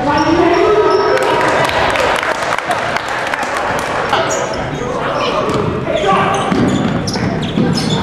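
Live sound of a basketball game in a gym: the ball bouncing on the hardwood floor, short sharp knocks in a large echoing hall, mixed with unclear shouting from players and spectators.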